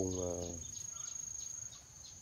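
An insect trilling: one steady, high-pitched note with a fast, even pulse.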